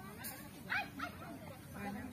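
An animal yelping twice in quick succession, two short high calls close to a second in, over low background voices.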